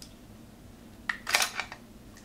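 A short cluster of sharp clicks and scrapes about a second in: the GTX 470's metal heat sink being twisted side to side and working free of the GPU, knocking against the card's frame.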